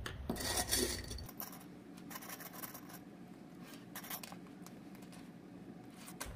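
Faint handling sounds: fabric sliding and rustling on a tabletop, with a few small clicks as plastic sewing clips are fastened along the edge of layered fleece pieces.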